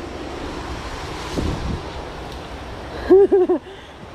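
Wind buffeting a handheld microphone in a steady rush, with a low thump about a second and a half in. Near the end a person's voice calls out briefly, the loudest sound.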